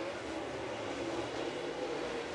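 Dirt late model race cars' V8 engines running at speed around a dirt oval, heard as a steady drone of engine noise.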